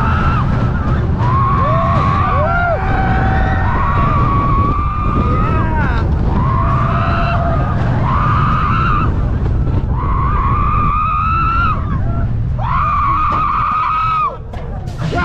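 Steel dive coaster train running on its track: a steady low rumble with repeated high squealing tones that rise and fall, each lasting a second or two.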